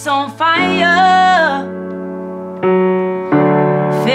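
A woman singing a phrase with her own piano accompaniment, then the piano alone holding chords that change twice, the second change a little before the end, with the voice coming back in at the very end.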